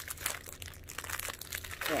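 Plastic wrapper of a 3M N95 mask crinkling as it is pulled open by hand, a quick run of sharp crackles.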